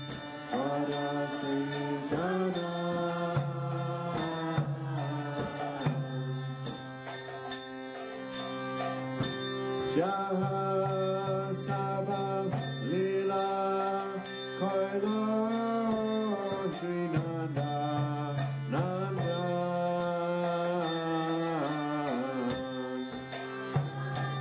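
Devotional kirtan: a voice singing a chanted melody in long phrases over a sustained low drone, with crisp clicks keeping a steady beat.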